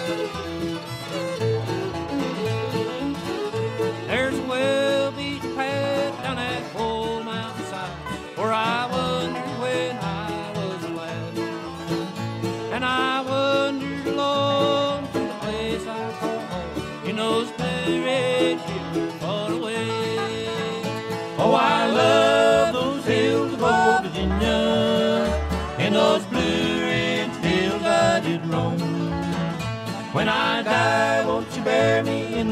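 Acoustic bluegrass band playing an instrumental break: banjo and guitar over a string bass pulse, with lead lines that bend in pitch from fiddle or dobro.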